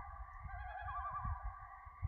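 Outro sound effect for an animated end card: several held, echoing synth-like tones that warble now and then, over a low pulsing rumble.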